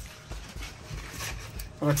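Water boiling in a stainless steel pot, a low steady bubbling, with a few faint ticks as dry spaghetti is lowered into it. A short spoken word near the end.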